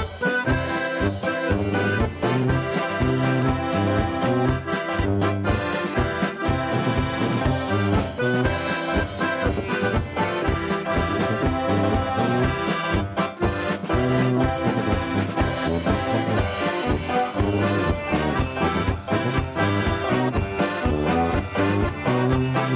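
A polka played live by a small band: a piano accordion leads the tune over an electric keyboard, with a drum kit keeping a steady beat throughout.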